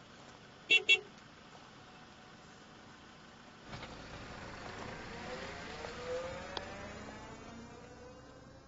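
A car gives two short horn beeps about a second in, then its engine revs up as it pulls away, rising in pitch and slowly fading.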